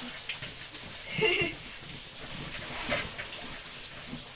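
Cave stream water running steadily in the passage, with a person's voice heard briefly about a second in.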